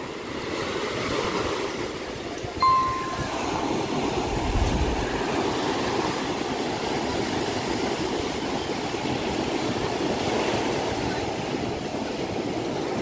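Ocean surf breaking and washing up the shore in a steady rush. A brief high-pitched tone sounds once, a little over two seconds in.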